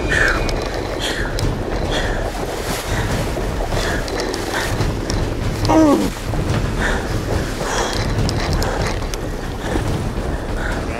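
Wind buffeting the microphone and water rushing and splashing against a small round skiff as a hooked goliath grouper tows it through the sea. A short falling cry comes about six seconds in.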